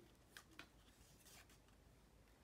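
Near silence: faint room tone with a few brief, faint clicks as a ceramic mug and a paper cocoa packet are handled.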